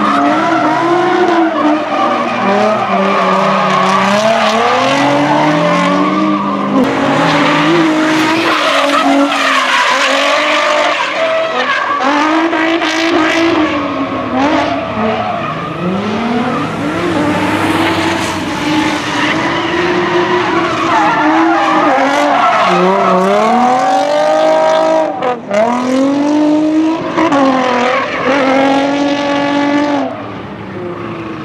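Several drift cars running together in tandem, their engines revving up and down hard over and over while the tyres squeal through the slides. About five seconds before the end the engine note drops briefly as a driver lifts, then climbs again.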